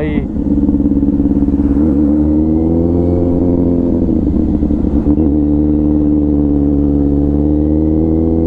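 Motorcycle engine running steadily in second gear at low road speed, heard from the rider's seat, its pitch rising slightly about two to three seconds in and easing back soon after.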